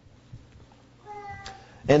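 A pause in a man's speech. About a second in, a faint pitched sound about half a second long sliding slightly down, with a click near its end.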